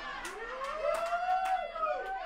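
Small club audience reacting to a joke: scattered laughter and several long, drawn-out voices that rise and then fall in pitch, with a few sharp claps or laugh bursts.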